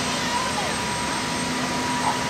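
Sikorsky VH-60 Marine One helicopter's twin turbine engines running on the ground, a steady whine over a constant rushing noise.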